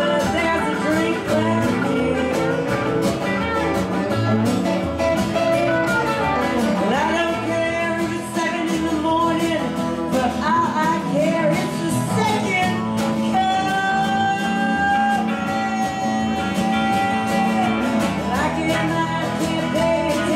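Live band playing a country-rock song: a lead vocal over strummed acoustic guitar, electric guitar, bass guitar and cajon, with a steady beat.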